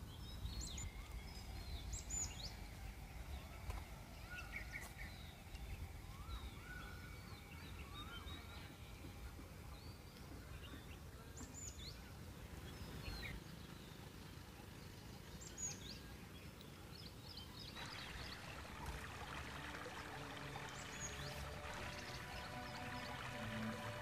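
Faint outdoor ambience: scattered short bird chirps and calls over a low rumble. About three-quarters of the way through, soft sustained music fades in underneath.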